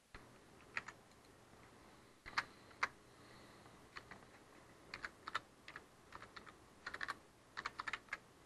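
Computer keyboard typing, faint: about twenty uneven keystrokes bunched into quick runs around the middle and toward the end, as code is typed in.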